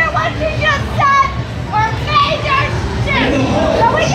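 Several young women's high voices talking and calling out over one another, over a steady low rumble.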